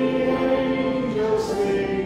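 A group of voices singing a hymn together in held notes, with the pitch changing from note to note.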